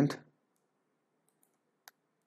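A single computer mouse click near the end, sharp and brief, amid otherwise near-silent room tone.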